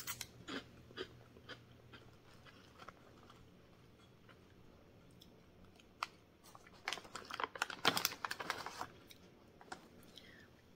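A person biting into and chewing a crunchy snack, with crisp crunches in the first second, softer chewing after, and another run of loud crunching from about seven to nine seconds in.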